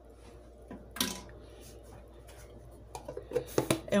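A spoon clinking against a glass bowl of melting chocolate: one sharp clink about a second in, then a few lighter knocks near the end.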